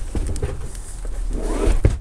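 Cushion pads being shifted and set down on the bed platform: rustling and soft knocks, swelling to a couple of low thumps near the end.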